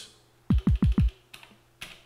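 Four synthesized kick drum hits from an Elektron Digitone in quick succession, about six a second, each dropping sharply in pitch. Two short plastic clicks of the synth's step buttons follow near the end.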